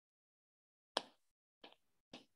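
Near silence broken by one short tap about a second in, followed by a couple of fainter ticks: a stylus tapping on a tablet's glass screen while writing.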